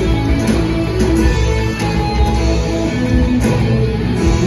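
Live rock band playing an instrumental passage, guitars to the fore over bass and drums.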